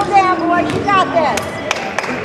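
A voice calls out, then a basketball is bounced on the hardwood gym floor several times, about three bounces a second, as the shooter dribbles at the free-throw line.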